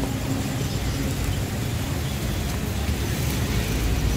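Steady low rumble of road traffic and car engines.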